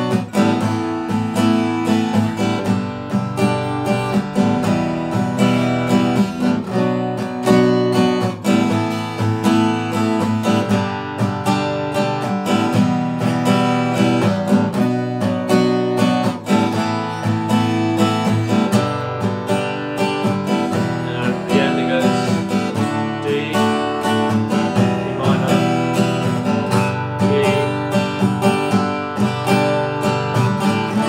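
Steel-string acoustic guitar strummed steadily through the outro progression B minor, Asus2, G, E minor, repeated.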